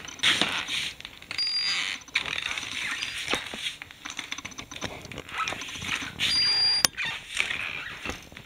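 Handheld body-search metal detector wand being swept around, giving a short high-pitched beep about a second and a half in and another near the end, over a rough hiss that rises and falls.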